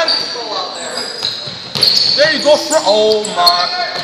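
A basketball bouncing and sneakers squeaking on a hardwood gym floor, with spectators' voices echoing in the hall during the second half, including a call of "Oh my...".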